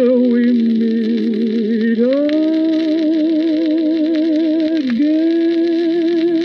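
A 1951 78 rpm shellac record playing the closing bars of a ballad. It has held notes with vibrato that slide up to a higher pitch about two seconds in and again just after five seconds. Light surface hiss and a few clicks run beneath the music.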